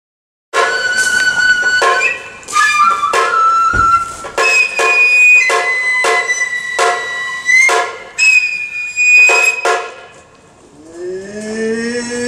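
Kagura festival music: a bamboo transverse flute playing long held high notes with short slides between them, over sharp drum strokes about every half second to second. It starts suddenly about half a second in, and the flute drops away near the end.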